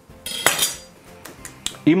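An eggshell knocked on the rim of a bowl and cracked open, with one sharp crack about half a second in and a lighter click near the end.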